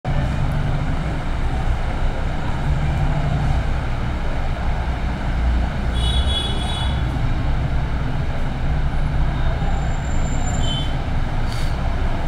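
Steady low rumble and hiss of background noise, with a brief high-pitched tone about six seconds in and a shorter one near the end.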